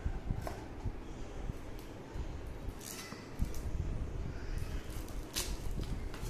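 Scissors cutting and picking at the plastic seal on a small cardboard phone box, with rustling, handling noise and a few short sharp clicks and crinkles, the clearest about halfway through and just before the end.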